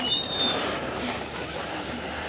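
A short, faint, high squeak from a door hinge as the door swings open, fading within the first half second, then a steady background hiss.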